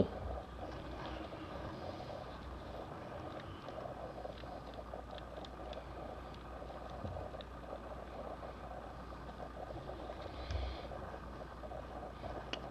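Faint handling of an old paper booklet: soft rustles and a few light ticks as it is opened and turned over, over a steady low background hum.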